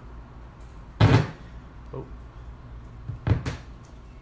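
Knocks from handling a turntable's tonearm as the stylus is set down on a vinyl record: one loud thump about a second in, then a quick pair of knocks near the end.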